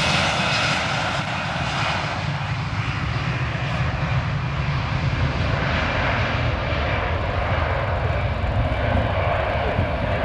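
Airbus A320 airliner's jet engines at takeoff power as it rolls down the runway, passing close by and then moving away: a steady deep rumble whose high hiss fades over the first few seconds.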